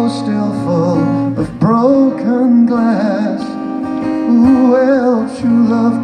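A male singer holding long, wavering sung notes over a strummed steel-string acoustic guitar, played live through a stage microphone.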